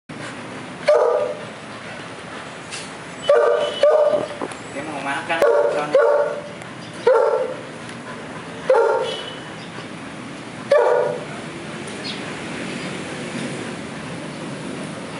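A dog barking about eight times, single short barks one to two seconds apart, stopping about eleven seconds in.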